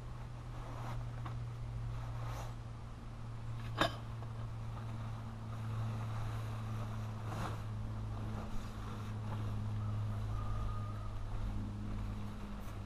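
A steady low mechanical hum runs throughout, under faint rustling and clicks as a camping tarp is pulled from its bag and unrolled on grass. One sharp click stands out about four seconds in.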